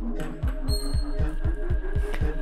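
Background electronic music with a steady beat.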